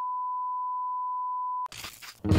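A steady 1 kHz test tone, the beep that goes with TV colour bars, cutting off sharply near the end into a brief burst of noise.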